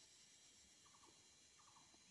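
Near silence: faint room tone, with two faint short trills of quick ticks, one about a second in and one near the end.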